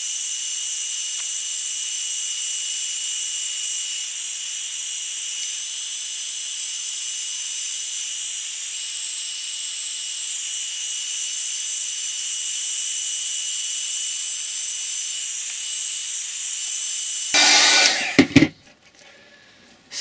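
Small handheld heat gun running steadily: an even high hiss of blown hot air with a thin steady whine, heating Permaseal on a plastic headlight lens to soften it. It stops about seventeen seconds in, with a brief louder handling noise.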